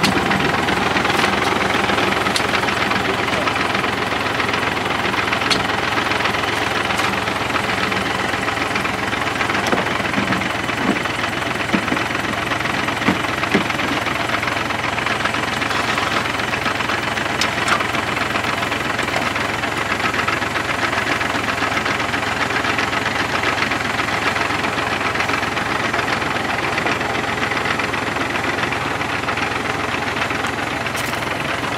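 Farm tractor's diesel engine running steadily at idle, driving the sprayer pump for the paint mix in the tank, with a few light knocks in the middle.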